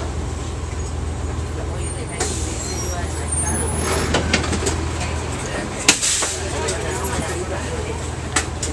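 Cabin of a 1999 Nova Bus RTS transit bus: the low diesel drone and rattles of the bus as it comes to a stop, with a sharp click and a short hiss of air about six seconds in.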